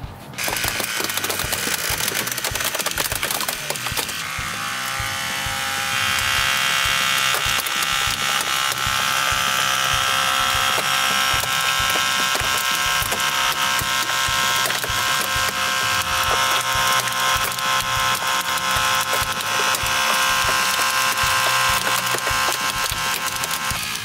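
Genesis hydraulic rescue ram extending under load. Its hydraulics whine steadily, rising in pitch and straining harder about four and six seconds in, while the car's dashboard crackles and creaks as it is pushed up.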